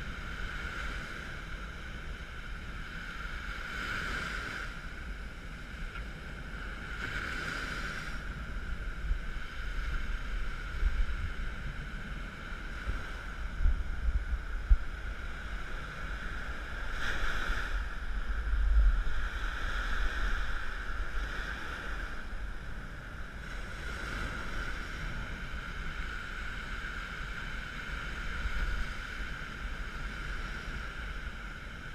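Surf breaking and washing up the beach under wind gusting on the action camera's microphone, swelling and easing.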